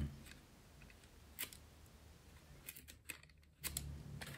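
A few faint clicks and light rubbing as the foam nose block with its plastic propeller is handled at the nose of a rubber-powered model plane's fuselage, fitted in and drawn back out.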